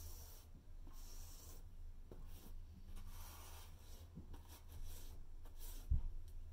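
A paintbrush scrubbing and dabbing acrylic paint onto a rough, textured canvas in several short, scratchy strokes, with a sharp knock near the end, over a steady low hum.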